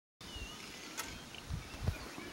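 Outdoor background ambience with a faint, thin high bird chirp early on, a single click about a second in, and two low thumps near the end.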